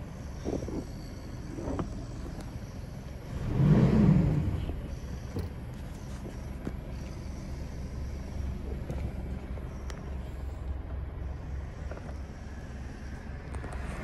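Mitsubishi Strada's 2.5 L DI-D four-cylinder turbodiesel idling, heard from inside the cab, with one short rev that swells and falls back to idle about four seconds in.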